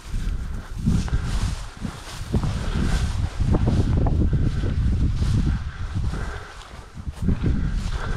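Footsteps swishing and crunching through tall dry field grass, with a low rumble of wind and body movement on the microphone.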